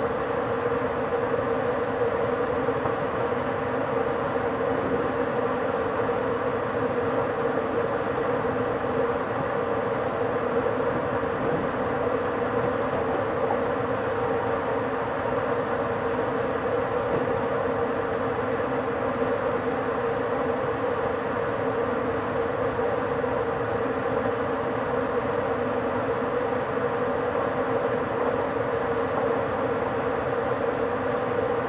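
Steady running noise of an ÖBB intercity train at about 70 km/h heard from the driver's cab: a constant hum with no distinct beat of rail joints. Near the end a higher hiss joins in as it runs alongside a freight train of log wagons.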